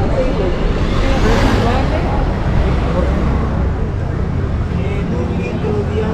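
A city bus passing close by: a low engine rumble with a rush of noise that swells about a second in and then fades. Voices of passers-by can be heard underneath.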